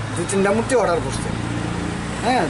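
A man's voice saying a few short words, over a steady low hum.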